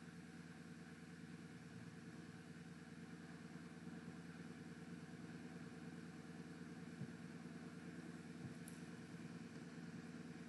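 Near silence: a faint, steady background hum and hiss from the recording, with two faint clicks in the second half.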